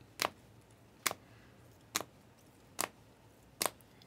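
Trading cards being flipped one by one through a hand-held stack, each card moved to the back with a sharp click, five times in an even rhythm of a little more than one a second.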